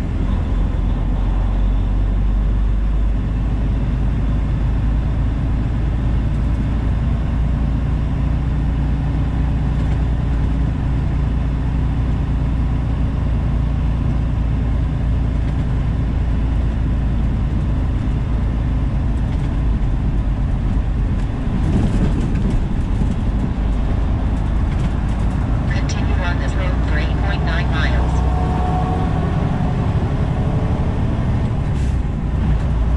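Semi-truck cab interior while driving: a steady low engine and road drone that holds even throughout, with some brief higher sounds near the end.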